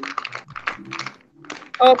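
Computer keyboard typing: a quick, uneven run of key clicks, with a faint voice underneath. Speech begins near the end.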